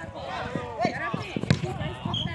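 Football kicked on a grass pitch: a few dull thuds, the loudest and sharpest about one and a half seconds in, over players' and onlookers' voices calling out.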